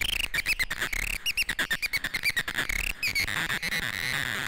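Eurorack modular synthesizer playing quick, chirping electronic blips, several a second, each bending in pitch. A little after three seconds in, the blips give way to a steadier buzzing tone.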